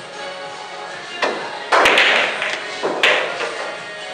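Pool balls knocking during a shot: three sharp clicks, the loudest about two seconds in, over steady background music.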